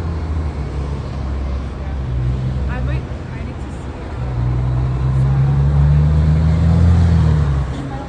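Street traffic: a low engine rumble from vehicles at the intersection, growing louder about halfway through and easing off near the end.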